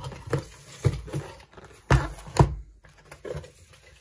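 Cardboard packaging being handled as a white product box is pulled out of a corrugated cardboard shipping box: a string of light knocks and scrapes, with two sharper knocks around the middle.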